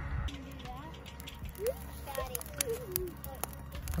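Campfire kindling of dry hay and sticks catching light, with faint scattered crackles over a low steady rumble. Faint distant high voices call out in the middle.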